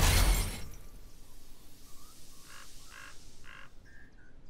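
Cartoon sound effect of a heavy drawbridge ramp crashing down onto dirt, loudest at the very start and dying away over about a second and a half. A few short musical notes follow near the end.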